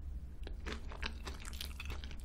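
Close-miked chewing of a mouthful of crunchy-topped, cream-filled choux pastry (crocanche): wet mouth sounds with many small crackles, busier from about half a second in, over a steady low hum.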